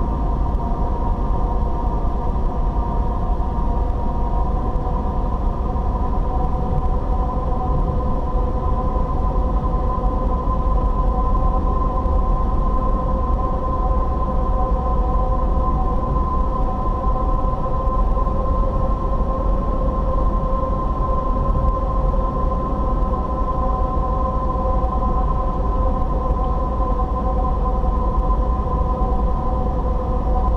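Car cruising at steady speed, heard from inside the cabin: a constant low rumble of road and tyre noise with a steady hum of engine and drivetrain over it.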